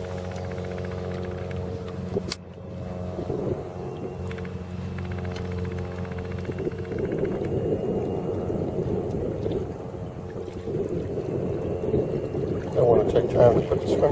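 A steady low motor hum, broken by a sharp click about two seconds in, gives way about halfway through to wind buffeting the microphone.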